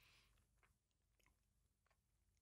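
Near silence: a faint breath right at the start, then a few faint wet mouth clicks from a person holding a sip of whisky in the mouth.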